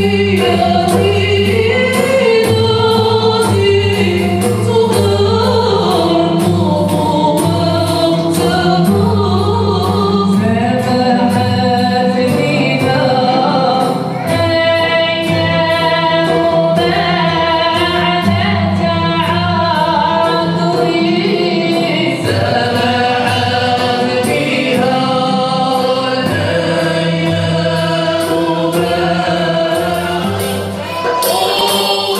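Live Andalusian (Moroccan ala) ensemble music: several voices singing together over violins bowed upright on the knee, cello, oud and keyboard, at a steady full level.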